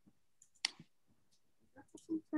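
A handful of short, sharp clicks of a computer mouse, the loudest about two-thirds of a second in, quiet over a near-silent room.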